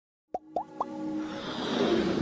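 Intro-animation sound effects: three quick rising pops about a quarter second apart, starting about a third of a second in, followed by a whooshing riser that builds toward the end.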